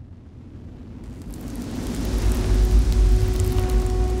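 Sound effect of a space capsule's atmospheric re-entry: a rumble that swells from about a second in to loud, with a crackling hiss over it, as the heat shield meets the upper atmosphere. A faint steady tone joins about halfway.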